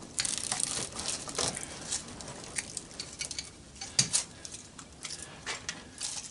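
Copper windings being pried and pulled out of an electric motor's steel stator with channel-lock pliers: irregular crinkling and scraping of the wire with scattered clicks and taps of metal, and a sharper snap about four seconds in.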